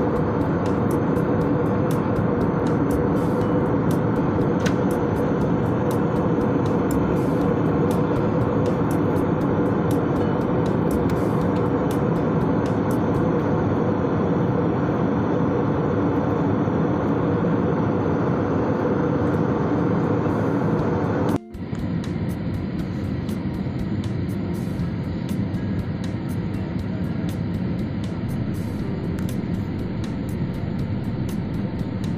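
Steady jet airliner cabin noise from the engines and airflow, with a faint steady hum in it. It drops out for an instant about two-thirds through and comes back slightly quieter and duller.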